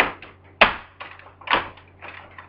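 Hard plastic clacks and knocks from a toy Barbie camper as its roof button is pressed and the parts shift under the hand. There are three sharper knocks about half a second to a second apart, with lighter clicks between them.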